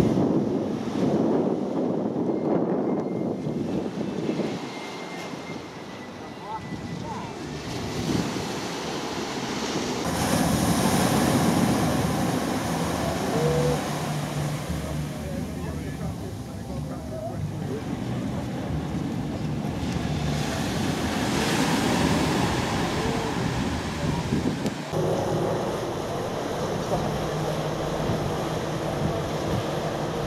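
Small waves breaking and washing up a sandy beach, with wind on the microphone. About five seconds before the end it cuts suddenly to a steady low hum of ship engines with water rushing below.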